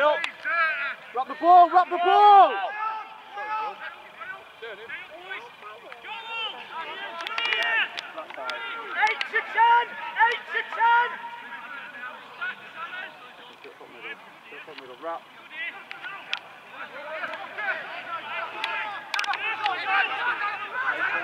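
Men shouting calls to each other during rugby league play, the words indistinct, loudest about two seconds in, with a few sharp knocks in between.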